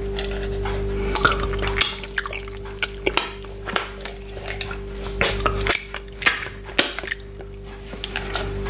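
Fingers rummaging through chopped frozen pineapple in a plastic measuring jug close to the microphone: irregular clicks, crackles and knocks of the icy pieces against each other and the plastic, over a faint steady hum.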